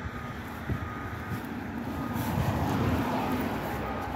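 A passing vehicle on the road, a noisy rumble that grows louder to a peak about three seconds in and then eases slightly.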